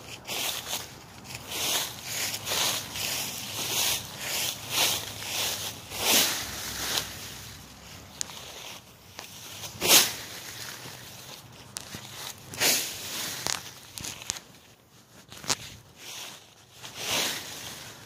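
Dry fallen leaves crunching and rustling in irregular bursts, about one or two a second, as a person moves about in a leaf pile. The loudest crunches come about six and ten seconds in.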